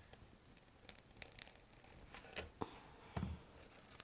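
Faint rustling and crinkling of artificial flower stems and leaves as a stem is pushed further into the arrangement, with several small clicks and one soft low thump a little after three seconds.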